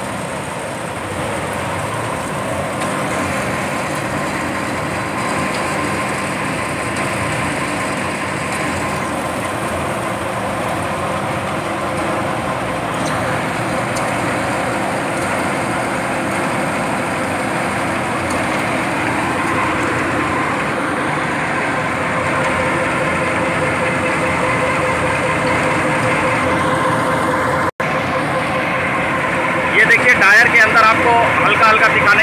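Asphalt hot-mix plant machinery running steadily: the feeder belts, conveyors, vibrating screen and their electric drives make a continuous mechanical noise with a faint steady hum. The sound cuts out for an instant near the end.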